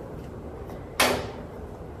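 A single short, sharp knock of a hard object about a second in, against quiet room tone.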